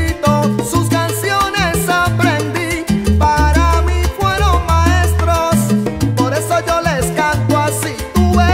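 Salsa band playing an instrumental passage with no singing: a rhythmic bass line under percussion and moving melodic instrument lines.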